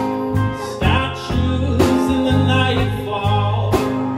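A live band playing a song: electric and acoustic guitars over bass, drums and keys, with a regular drum beat.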